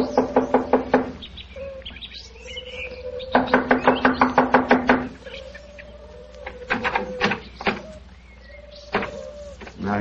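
Sound-effect knocking on a cottage door in three quick rapping bouts, the middle one the longest, each about eight knocks a second. Between the bouts a bird calls faintly in low held notes.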